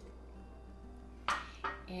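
A single light clink of glassware a little past halfway, over quiet room tone with a low steady hum.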